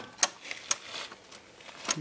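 Three light, sharp clicks spread through a quiet stretch: small knocks from handling.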